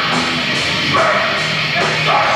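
Metalcore band playing live and loud: distorted electric guitars and a drum kit, with cymbal hits coming about two to three times a second.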